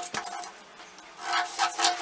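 Scissors cutting through pattern paper: a short snip near the start, then a longer stretch of cutting in the second half, over faint background music.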